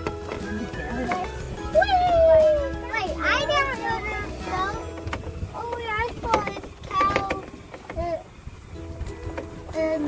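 A young child's voice making wordless vocal sounds over background music.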